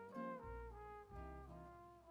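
Quiet background music: a slow melody of held notes changing every half second or so.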